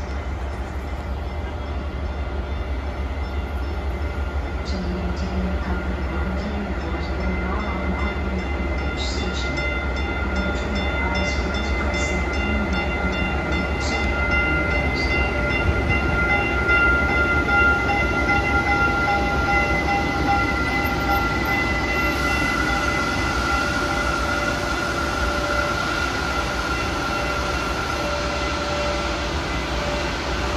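TEX Rail Stadler FLIRT diesel multiple unit pulling into the station. Its running rumble carries several steady high whining tones and grows louder as it comes in, loudest about 16 to 18 seconds in, with light clicks as it rolls closer.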